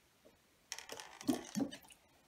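Bhaskara's wheel of part-filled plastic water bottles on a 3D-printed hub, turned by hand: a flurry of plastic clicks and clatters with two duller knocks, starting a little under a second in and lasting about a second.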